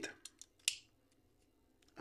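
Light clicks of hard plastic as a Beyblade X bit is pushed into its ratchet: a few faint ticks, then one sharper click about two-thirds of a second in.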